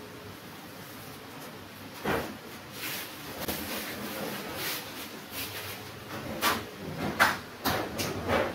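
Masking tape being pulled off a painted wall in a series of short ripping rasps. The rips start about two seconds in and come quicker and louder toward the end.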